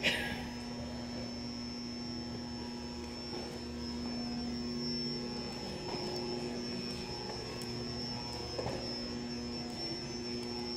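Steady electrical hum of an indoor room: a low drone with a thin, high, constant whine over it, and no other clear event.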